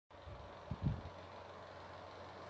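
A couple of soft, low thumps about a second in, over a faint steady hum: handling noise as the recording phone is held and settled at the start of recording.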